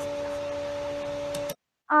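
Steady electrical-sounding hum, one low tone with a higher overtone over a hiss, picked up by an open microphone on a video call. It ends with two faint clicks and cuts off abruptly about a second and a half in. A voice starts just at the end.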